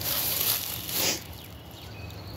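Rustling and scuffing noises in two short bursts in the first second, then quieter.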